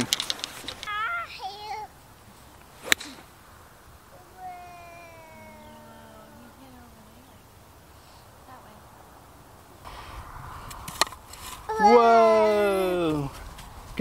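A golf club striking a ball on a tee shot: one sharp crack about three seconds in. Near the end a voice calls out in one long falling tone.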